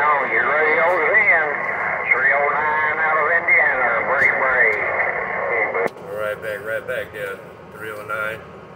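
Voices coming over a CB radio, thin-sounding and hard to make out. About six seconds in the transmission cuts off with a click, and another station's voice comes on.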